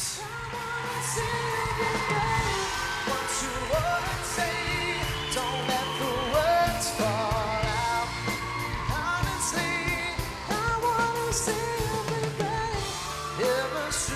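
Live pop band playing with a singer holding long, wavering notes over a steady drum beat.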